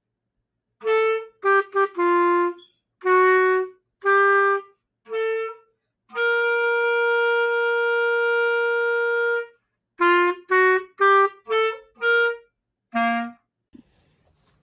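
A band wind instrument playing a solo holiday melody: a phrase of short separate notes, a long held note in the middle, then another phrase of short notes.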